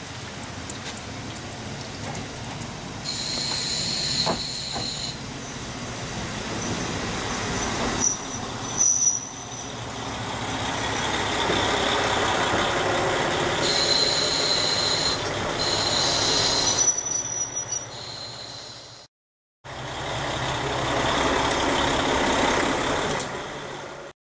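KiHa 40 series diesel railcar rolling in and slowing to a stop, its diesel engine running, with high brake squeals coming and going and rain falling. After a short break the railcar's engine runs steadily as it stands at the platform.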